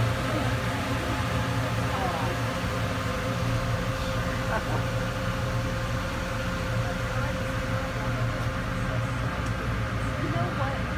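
Ferry engine running steadily, a constant low hum with a thin steady tone above it, under faint voices of passengers.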